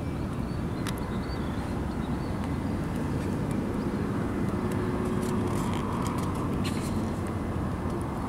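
Steady low outdoor rumble, with a few faint high clicks scattered through it.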